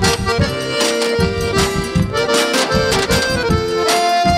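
Instrumental forró break: an accordion plays a melody in held and stepping notes over a quick, steady beat of scrap-metal tin-can percussion.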